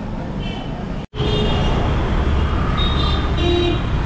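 Busy city street traffic with several short vehicle horn toots. A brief dropout about a second in, after which the traffic rumble is louder and closer as a lorry passes.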